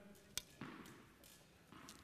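Near silence broken by one brief sharp tap of a tennis ball about a third of a second in, just after a backhand stroke.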